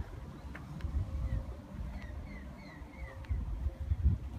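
Low wind rumble on the microphone, with a bird giving about five short chirps in the middle.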